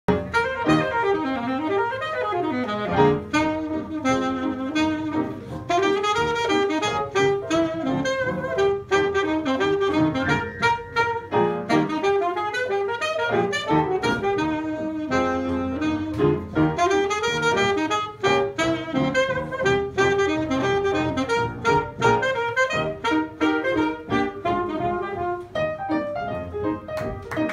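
Saxophone and piano playing 1920s jazz together, the saxophone carrying the melody over the piano.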